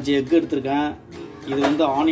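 A person talking over background acoustic guitar music.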